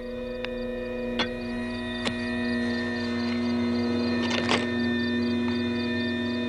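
A steady droning hum of several held tones, with a few faint clicks in the first couple of seconds and a brief rustling noise about four and a half seconds in.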